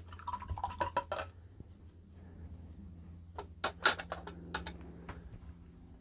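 Light clinks and taps of a watercolour painter's brush and water pot being handled, in two short clusters, about a second in and again around four seconds in.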